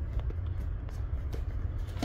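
Room tone: a steady low hum with a few faint, soft ticks over it.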